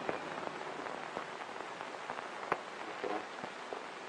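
Steady hiss of an old film soundtrack, with scattered clicks and crackles and one sharper click about halfway through. A faint brief murmur of voice comes a little after that.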